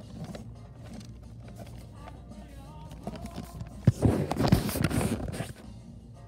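Store background music playing softly, with a cardboard product box handled close to the microphone: a loud rustling, bumping scrape from about four seconds in to about five and a half as the box is turned over.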